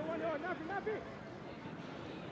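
Short shouted calls carrying across the football ground during open play, a few in the first second, over the ground's steady background noise.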